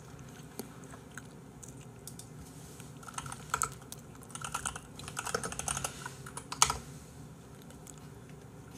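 Typing on a computer keyboard: a quick run of key clicks starting about three seconds in and lasting roughly four seconds, with one louder key strike near the end.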